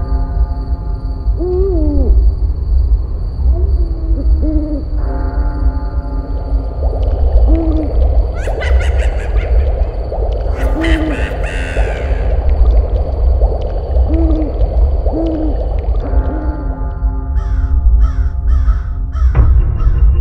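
Spooky background music: held synth chords over a deep rumble, with swooping moan-like notes every couple of seconds and crow caws mixed in around the middle.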